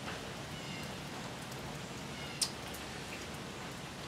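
Low steady background hiss, with a single brief click about two and a half seconds in.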